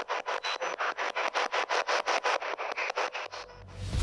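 A handheld spirit box sweeping through radio stations, giving fast, evenly chopped static at about seven bursts a second, with no voice coming through. The sweep stops a little after three seconds in, and a rising hiss follows.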